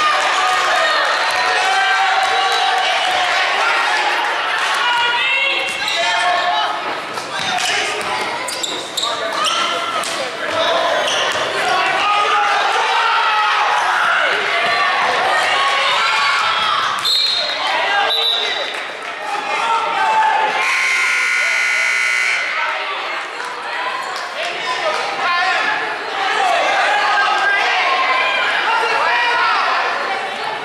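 Basketball game in a gymnasium: a ball dribbling and bouncing on the hardwood floor, with players and spectators calling out throughout. About two-thirds of the way through, the scoreboard horn sounds once for about two seconds.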